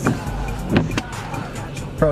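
Car ambience: a vehicle's engine running with a steady low hum and music playing low, and two short sharp knocks, one at the very start and one just before a second in.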